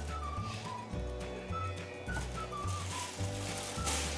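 Background music: a light tune with a bass line that changes note about every half second to second, held chord tones, and short melody notes above.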